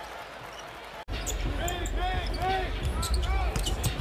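Televised basketball game sound: a ball bouncing on the hardwood court under arena noise, with a voice. About a second in, the sound drops out for an instant at an edit between clips.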